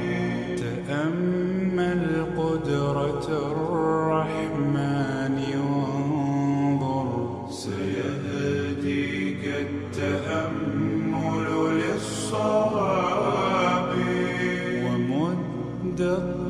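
Slowed, reverb-heavy a cappella nasheed: layered male voices hold long, slowly gliding chanted notes without clear words, in a dense wash of echo.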